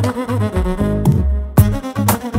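Background music with pitched notes over a deep bass line. The high end drops out briefly, then a sharp hit lands near the end.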